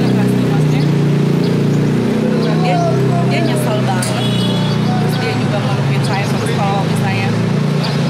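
A woman talking, over a steady background hum.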